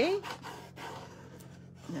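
A spoken "okay" trails off, then faint scraping as a decor transfer is rubbed down onto wooden slats, over a steady low hum.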